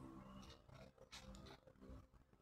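Near silence: a faint held musical tone fades out about half a second in, leaving only faint scattered rustles.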